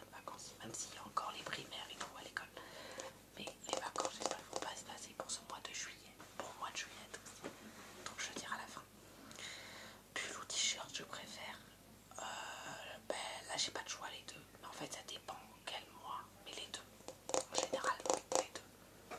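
Close-up whispered speech in French, a young male voice whispering softly and steadily to the microphone.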